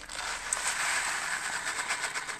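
Dry rice grains pouring from a packet into the non-stick inner pot of a Tefal pressure cooker: a steady hiss made up of many tiny grain impacts on the pot.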